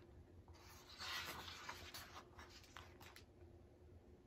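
Faint papery rustle of a hardcover picture book's page being turned, followed by a few soft ticks of handling.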